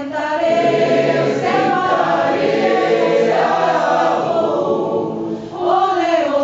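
A mixed choir of men's and women's voices singing a maracatu song. The sound dips briefly near the end, then the voices come back in strongly.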